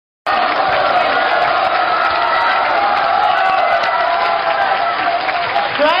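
Audience applauding and cheering, a dense and steady wash of sound; a man's voice starts speaking near the end.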